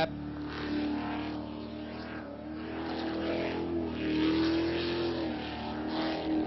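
Jet sprint boat's big-block V8 engine running hard through the course: a steady engine note that wavers slightly in pitch and grows louder about four seconds in.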